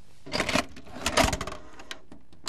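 A VHS cassette being pushed into a video recorder, the loading mechanism clattering in two short bursts.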